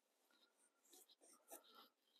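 Near silence, with a few faint, short scratches of a graphite pencil stroking drawing paper in the second half.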